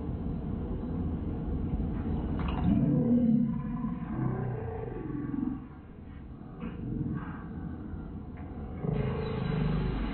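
Slowed-down broadcast sound from a slow-motion football replay, heard through a television speaker: a deep, drawn-out roar with slow gliding tones in the middle. It gets louder again near the end as the replay wipe graphic sweeps in.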